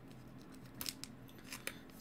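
Faint handling of trading cards: a few short, soft clicks and snaps as the cards are shuffled and flicked between the fingers, about a second in and again near the end.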